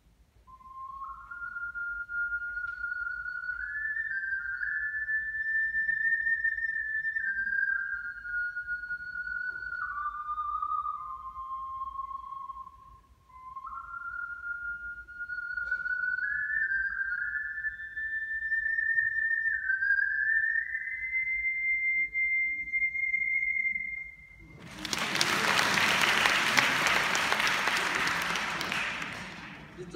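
Soprano ocarina playing a short solo melody: a single pure, high, whistle-like tone moving up and down in steps. It ends on a held high note, followed by audience applause near the end.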